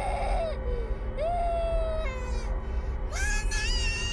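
A young boy screaming in long, high, held shrieks: one breaks off about half a second in, another runs from about one to two seconds, and a third starts about three seconds in. A low rumble runs underneath.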